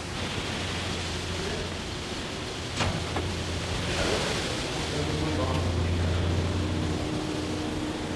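Steady rushing background noise with a low hum, and a single knock about three seconds in.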